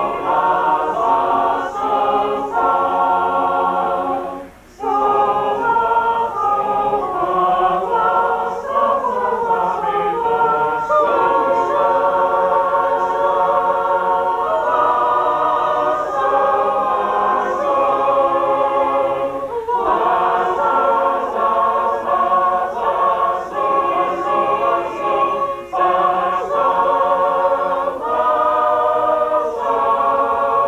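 A mixed group of shape-note singers singing a hymn tune a cappella in four parts, on the fa-sol-la-mi syllables rather than the words. There are brief breaks between phrases about five seconds in and again near twenty seconds.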